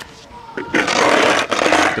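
Skateboard being handled right at the camera: a loud scraping, rustling noise lasting about a second, starting a little under a second in, as the board is lifted and rubbed close to the microphone.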